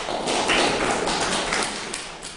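Audience applauding: dense clapping that starts suddenly and fades away near the end.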